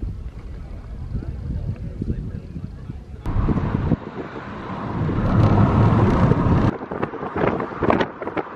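Wind buffeting the microphone as a low rumble. About three seconds in it gives way to a louder rushing noise that swells and then cuts off abruptly just before seven seconds.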